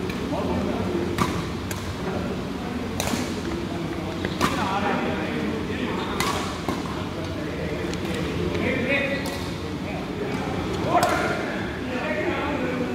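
Badminton racquets striking a shuttlecock during a doubles rally: a series of sharp hits, irregularly spaced a second or two apart. Voices carry in the background of a large, echoing hall.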